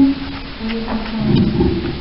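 A woman's voice over a microphone and hall PA: the end of a word, then a drawn-out, steady hesitation hum between sentences.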